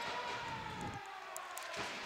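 Quiet basketball-arena background with one faint, long tone that rises slightly and then slowly sinks in pitch.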